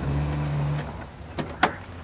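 Maruti Omni van's engine running with a steady hum that stops just under a second in. Two sharp clicks follow about a quarter second apart, the second louder.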